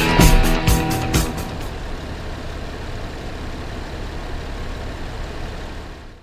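Background music with a beat that stops about two seconds in, leaving a steady low rumble of a car cabin that fades out at the end.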